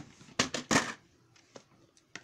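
VHS tapes and cases being handled close to the microphone: a quick cluster of plastic clacks and scrapes about half a second in, then only faint rustling.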